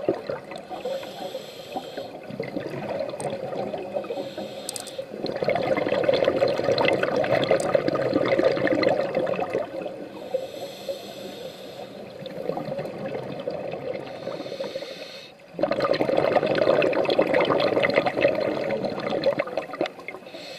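Scuba diver breathing through a regulator underwater: a hissing inhalation, then a long burst of bubbling exhalation, twice over. The exhaled bubbles come about five seconds in and again from about fifteen seconds.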